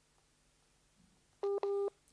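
Two short electronic beeps in quick succession from a video-call app, the alert as a caller's internet connection drops and the call starts reconnecting.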